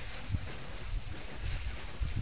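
Low, uneven rumble of wind and handling noise on the microphone, with a faint hiss and a few light ticks, as a handheld camera is carried.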